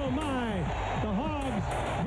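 A sportscaster's excited play-by-play call over stadium crowd noise.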